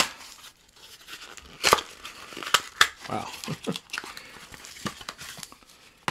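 Tape and paper being peeled and torn off a wrapped stack of trading cards: several sharp rips among softer crinkling of the paper.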